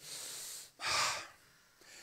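A man breathing audibly into a close handheld microphone, two breaths: a steady one of under a second, then a shorter, louder one.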